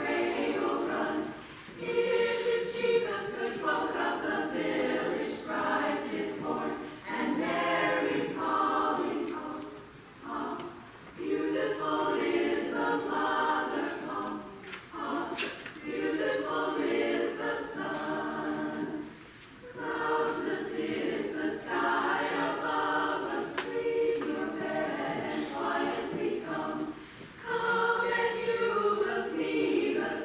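A small a cappella vocal ensemble singing a Christmas carol in harmony, in phrases of several seconds with brief pauses for breath between them.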